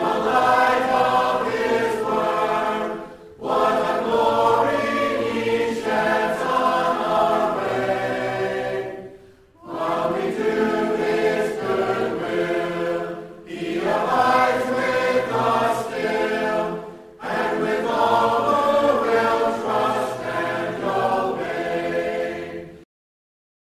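A choir singing a hymn, in phrases broken by short pauses.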